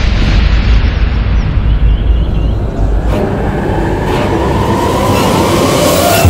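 Dramatic TV soundtrack effect: a loud, deep booming rumble, with a hit about halfway through and rising tones building to a second hit at the end, a transition sting over a scene change.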